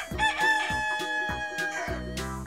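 A rooster crowing once: one long cock-a-doodle-doo.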